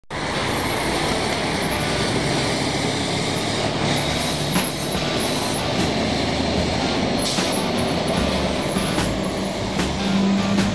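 Tractor-trailer tanker truck driving past through steady street traffic noise, with a few brief clicks along the way.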